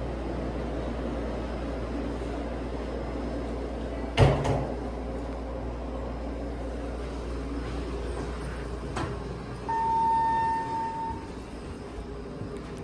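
Hydraulic passenger elevator (a Dover car modernized by ThyssenKrupp) running with a steady low hum, with a sharp knock about four seconds in. Near the end a single long electronic beep sounds, about a second and a half long, as the car arrives; the hum then drops away and the doors slide.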